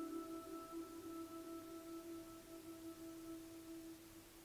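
Soft ambient background music: a quiet held chord of steady ringing tones that slowly fades.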